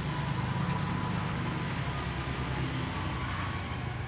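An engine running steadily: a low hum under an even hiss, with no change in pitch.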